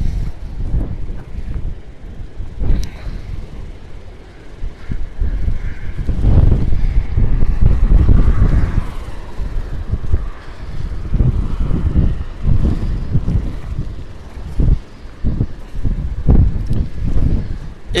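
Strong gusting wind buffeting the phone's microphone, a low rumble that swells and drops, heaviest around the middle: the leading-edge winds of a hurricane squall.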